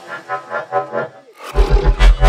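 Riddim dubstep track: a pitched synth line pulses without bass, dips out briefly, then heavy sub-bass and a regular pounding bass rhythm come in about one and a half seconds in.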